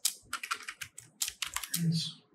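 Typing on a computer keyboard: a quick run of keystrokes, several a second.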